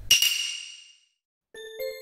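A bright chime sound effect sets in at once and rings out, fading over about a second, marking the dish as complete. After a short silence, soft background music notes begin about halfway through.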